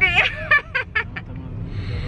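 A woman laughing in a quick run of short bursts that die away after about a second, over the steady low rumble of a car cabin on the move.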